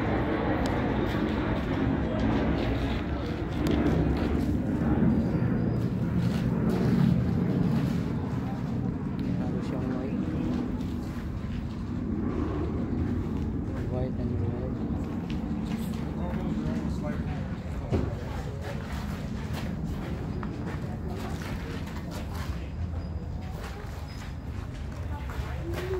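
Indistinct voices of several people talking in the background, with one sharp knock about three quarters of the way through.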